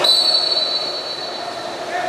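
Referee's whistle blown in one long, steady, shrill blast of nearly two seconds, starting sharply, over the echoing noise of a pool hall.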